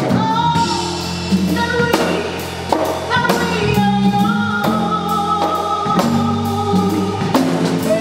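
Live soul band: a woman's lead vocal holding long, sliding sung notes over drum kit and bass.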